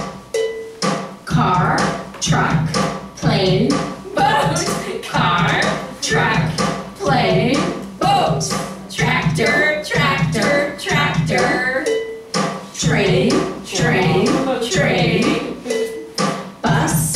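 A children's English vocabulary chant: a voice chanting short words in time with a steady rhythmic music backing.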